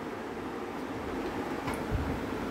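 A steady background hiss, with a single soft knock near the end.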